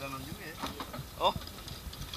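Brief, indistinct talk from a man's voice, with a short rising vocal sound a little after a second in.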